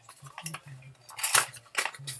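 Small clicks and taps of a skincare moisturizer's container and packaging being handled and opened, a few light ones early and a louder pair about one and a half seconds in.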